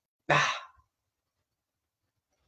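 A woman's brief, breathy vocal exclamation, a sigh-like "hva?", about a quarter second in.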